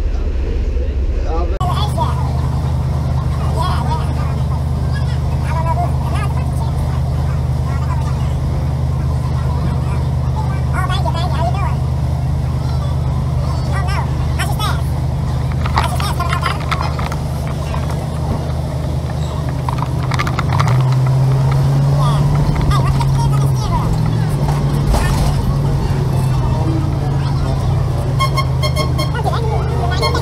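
Vehicle engine idling with a steady low hum, then revving up as it pulls away about two-thirds of the way through before settling back to an even run. Street voices and scattered short clicks sound over it.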